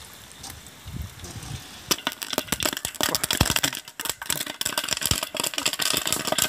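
Popcorn kernels popping: a quiet start, then from about two seconds in a dense, irregular run of sharp pops and rattles that keeps going.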